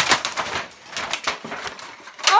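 Clear #6 plastic clamshell containers and trays crinkling and clattering as they are handled, in a dense run of irregular crackles and clicks after a sharp knock at the start.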